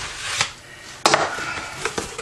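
Knife slitting the packing tape on a cardboard mailing box and the flaps being pulled open: a few sharp rips and scrapes, the loudest about a second in.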